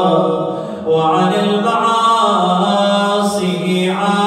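A man's solo voice chanting an Arabic supplication in a slow, melodic style, holding long notes, with a brief dip just before a second in.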